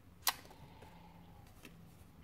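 An oracle card being picked up from where it stands on a cloth-covered table: one sharp tap just after the start, then faint handling and a small click later on.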